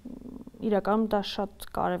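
A woman talking in Armenian, opening with a low, rough hum before her words resume.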